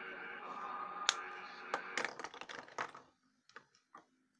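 A quick run of sharp clicks and taps from hands handling markers and paper, several a second through the middle, over background music that cuts off suddenly about three seconds in; a few fainter clicks follow.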